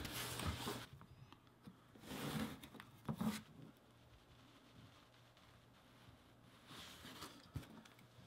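Craft knife blade cutting through thin vegetable-tanned leather: three short, faint scraping strokes in the first few seconds and a fainter one near the end.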